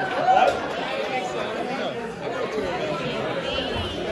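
Indistinct chatter of several people talking over one another, with no music playing; one voice is briefly louder just after the start.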